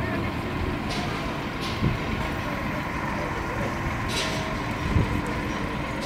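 A heavy truck's engine running steadily, with a few short hisses of air and two low thumps, the louder one about five seconds in.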